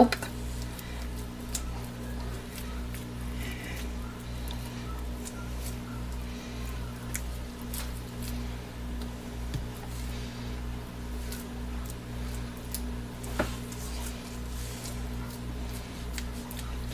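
Thick, fast-setting cold-process soap batter being pushed and scraped into a plastic mold with a silicone spatula: faint squishing and scraping with a few light clicks, the batter having seized from acceleration. A steady low hum runs underneath throughout.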